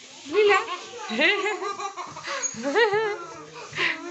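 A young child imitating a puppy with a few pitched yelping calls whose pitch swoops up and down.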